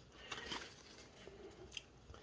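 Faint handling of Magic: The Gathering cards: cards sliding against each other as they are shifted through by hand, with a small click near the end.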